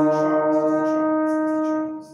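A small group of student brass players (trumpet, French horn and trombones) hold the piece's first note, an E-flat, together as one steady sustained chord, releasing it just before the end.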